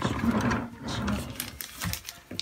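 Rough scraping and rumbling from a bathroom vanity drawer and the things in it as they are handled, with a short knock near the end.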